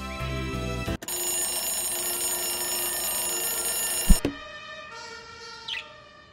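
Music cuts off about a second in and is replaced by a loud, steady alarm-like ringing. The ringing ends about four seconds in with a sharp thump, and fading tones ring on after it.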